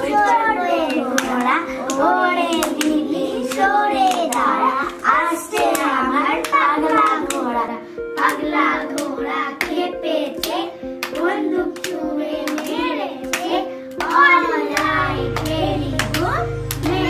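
Young girls playing a clapping game: hand claps in a quick, even rhythm, about two to three a second, while they chant a rhyme. Background music with a steady held tone runs underneath, and a deep bass comes in near the end.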